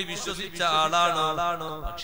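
A man's voice chanting a religious recitation in long, wavering held notes, with a short break about half a second in.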